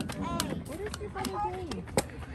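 Several spectators' voices calling out and cheering over one another, with no clear words, and a few sharp clicks, the loudest near the end.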